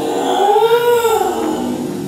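A dog 'talking': one long, drawn-out howl-like whine that rises in pitch to a peak about a second in and then falls away.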